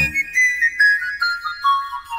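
Panpipe playing a solo run of quick notes that steps steadily downward in pitch, about five notes a second, as the backing accompaniment falls silent at the start.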